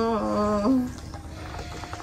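The end of a long held sung note in a Tai folk song: one voice sustains the note, dips slightly, lifts at the end and stops a little under a second in. A short quiet pause follows before the next phrase.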